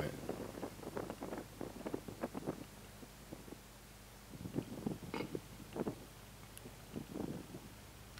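Gusty wind buffeting the camera microphone in irregular low rumbles, in two spells with a lull about three seconds in.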